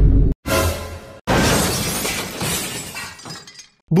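Glass-shattering sound effect: a short crash about half a second in, then a bigger one just after a second in that trails away over a couple of seconds, laid over music.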